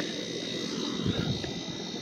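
Outdoor ambience: a steady high insect drone, with a low rumble that swells about a second in.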